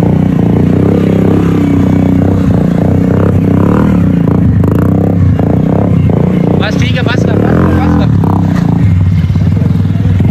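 Small single-cylinder motorcycle engine of a Honda CD70-type bike, held at steady revs through a long wheelie. Voices call out briefly about seven seconds in.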